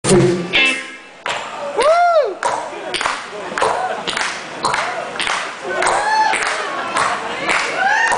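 A live band's electronic pop playing over a hall PA. A beat of sharp, noisy hits comes about twice a second, with short pitch glides that rise and fall between the hits.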